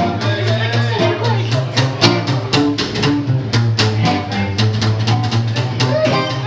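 Small acoustic traditional jazz band playing live: a double bass walks a low bass line under a steady strummed guitar beat, with a trombone line carrying over the top.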